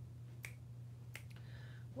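A few faint sharp clicks from items being handled on a work table, one about half a second in and two close together just past one second, over a steady low electrical hum.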